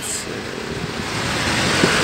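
Road traffic noise from a passing motor vehicle, growing louder toward the end.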